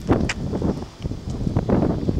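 Wind buffeting the camera microphone, a gusty low rumble that rises and falls.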